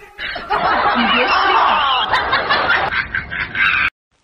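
Laughter: a dense run of overlapping giggles and snickers that stops abruptly just before the end.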